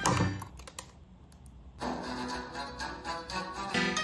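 Background music dips out for about a second and a half, and in the gap come a few sharp clicks of scissors snipping through a plastic zip tie. The music then comes back in, full again near the end.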